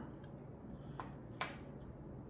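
Two light clicks of a metal fork on a wooden cutting board, about a second in and again shortly after, the second the sharper.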